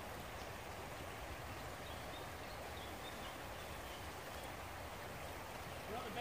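Faint, steady rush of a shallow river running over rocks.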